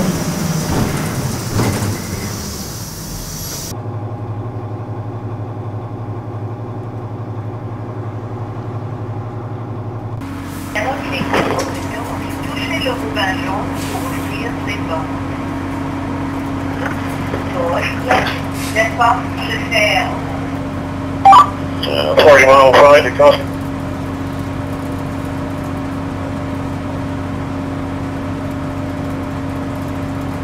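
Steady interior drone of a city transit bus, broken by two abrupt cuts. The last and longest part is a constant hum with a steady low tone while the bus stands at a stop, with a few short stretches of indistinct talk over it.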